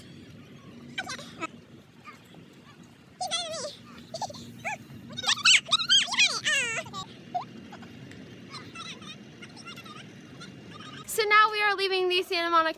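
High-pitched squeals and whoops that rise and fall in pitch, in a few runs between about three and seven seconds in, over a low steady hum. Speech starts near the end.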